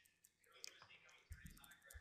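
Near silence with a few faint, short clicks of computer keys and mouse buttons.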